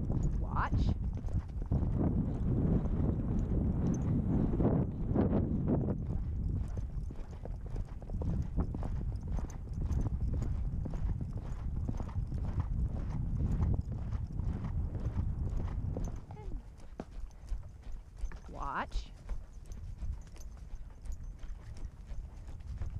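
Hoofbeats of a ridden endurance horse moving along a sandy trail, a steady run of quick, even knocks over a low rumble. The hoofbeats grow quieter and sparser in the last few seconds.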